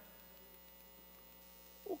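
Faint steady electrical hum with no other sound, until a man's voice starts again near the end.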